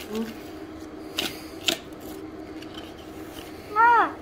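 Cardboard jewellery box being handled and opened: two sharp clicks of the lid and flap about half a second apart, then a short exclaimed "ooh" near the end.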